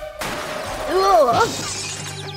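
A sudden crash-and-shatter sound effect just after the start, marking a fall in which a child gets hurt. About a second in comes a short child's cry of pain.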